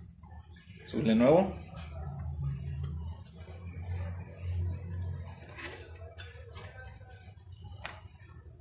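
A plastic light lens and its rubber gasket being handled: a few sharp clicks of plastic, mostly in the second half, over a low steady hum. About a second in, a short voiced groan or word.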